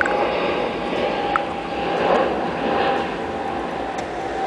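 Road traffic: a car passing by, its tyre and engine rush swelling about two seconds in and easing off again, over a steady faint tone.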